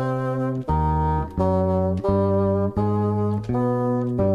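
Experimental rock ensemble music: a run of held chords from saxophone and brass, each chord lasting about two-thirds of a second before the next one.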